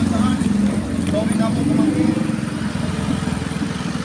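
Small motorcycle engine running steadily under way, with a low, even, pulsing drone.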